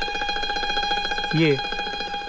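Background film music: one steady held note from a plucked-string instrument, ringing on with its overtones. A single short spoken word falls about halfway through.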